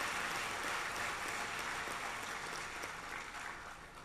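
Audience applauding: steady clapping that dies away near the end.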